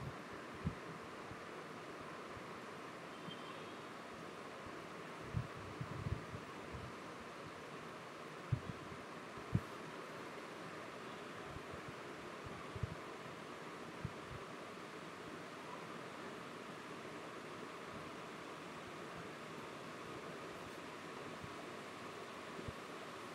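Steady background hiss of an open microphone, with a faint hum near 1 kHz and several soft, short low knocks scattered through.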